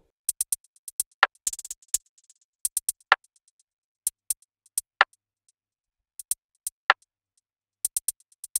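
Programmed drum-machine hi-hats playing alone in an uneven, stuttering pattern of short high ticks broken by gaps. A sharper, fuller percussion hit lands about every two seconds.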